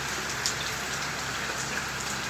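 Steady rain falling, an even hiss with a few faint drop ticks.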